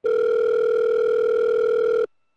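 A single steady electronic tone held at one mid pitch for about two seconds, starting and cutting off abruptly.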